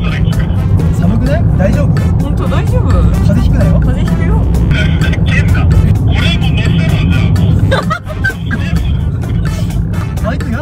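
Steady low rumble of a car running, with music and people talking over it.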